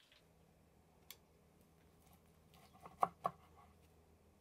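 Quiet kitchen room tone with a faint steady hum, broken by a single sharp click about a second in and two short knocks just after three seconds.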